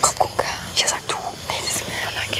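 Soft, whispered speech in short broken syllables.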